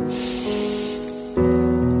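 Acoustic piano backing track holding sustained chords, moving to a new chord about half a second in and again near the end. A singer's breath hisses into the microphone during the first second.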